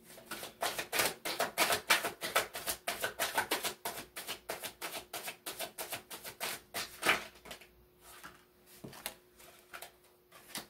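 A deck of tarot cards being shuffled by hand, a fast run of papery slaps and clicks for about seven seconds, then only a few scattered ones toward the end.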